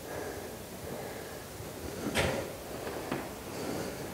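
Quiet room tone, broken by a single sharp knock about two seconds in and a fainter click about a second later.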